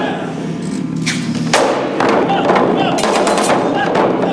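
Japanese taiko drums played as an ensemble, struck with sticks. After a short lull near the start, heavy strokes come thick and fast again from about two seconds in.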